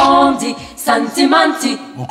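Unaccompanied singing voice, with a few sung phrases and notes held for a few tenths of a second and no instruments heard.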